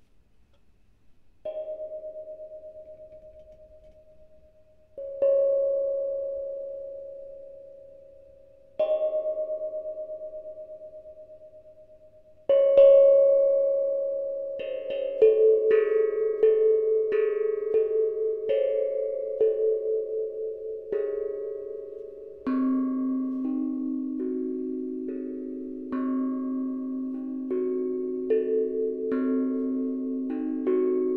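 Handmade steel tongue drum (tank drum) played note by note: four slow single notes, each ringing long and fading, then from about halfway a quicker pentatonic melody whose notes ring over one another, dipping to the drum's lowest note near the end.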